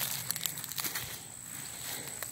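Footsteps through grass and weeds: soft rustling and a few light crunches in the first second, then quieter.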